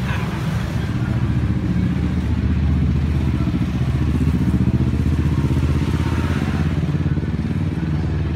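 A motorbike engine passing close by on the street, loudest about halfway through, over the hum of other road traffic.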